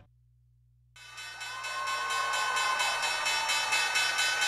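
A stock-exchange closing bell ringing in a fast, steady rattle, starting about a second in after a near-silent gap. Under it, a trading-floor crowd is cheering and clapping.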